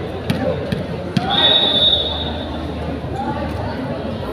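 A few sharp knocks of a ball bouncing on a concrete court, then a steady, high whistle blast a little over a second long: a referee's whistle signalling the serve. Crowd chatter echoes in the large hall throughout.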